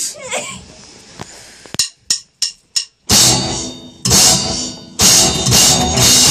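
A count-in of four quick sharp clicks, typical of drumsticks struck together, then the live psychobilly band (drum kit, upright bass, electric guitar) hits three loud accented chords about a second apart, each ringing out and fading.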